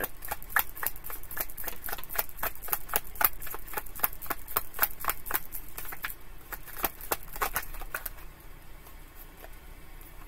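A deck of tarot cards being shuffled by hand: a quick run of card clicks and slaps, about five a second, that thins out and stops about eight seconds in.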